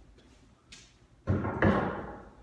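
Wooden boards knocked and set down on a workbench: a faint click, then two loud wooden knocks in quick succession late on, the second sharper.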